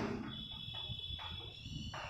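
Chalk strokes on a chalkboard as a word is written: a few soft, short scratches, over a faint steady high-pitched whine.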